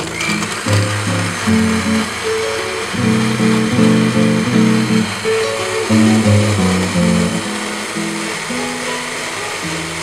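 Countertop blender switched on and running steadily as it blends a liquid drink, heard under loud background music.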